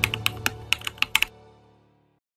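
Keyboard-typing sound effect: about nine quick key clicks in the first second or so, over the fading end of background music.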